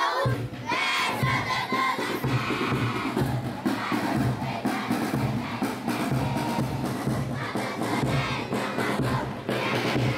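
A crowd of children's voices singing together over a steady drum beat.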